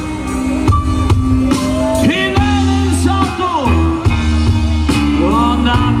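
Live rock band playing a song with a lead singer, held bass notes moving under a bending, sliding melody.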